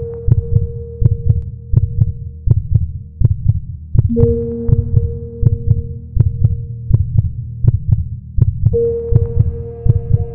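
Countdown sound bed: a low pulse like a heartbeat beating steadily, with a held tone swelling in just before the start, again about four seconds in and again near the end.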